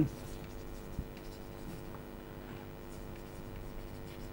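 Chalk writing on a chalkboard: faint scratching strokes with a small tap about a second in, over a low steady hum.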